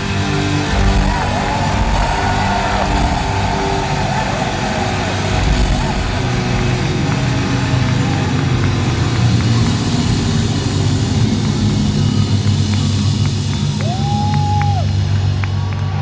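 Live hard-rock band playing loud in an arena, with heavy bass, drums and distorted guitar, picked up by a phone microphone. A few high tones slide up and down, and one near the end rises, holds and falls.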